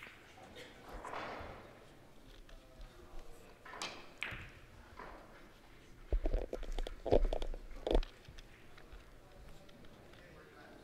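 Low, indistinct talk in a large hall, with a short run of dull thumps and knocks about six to eight seconds in, the loudest sounds here.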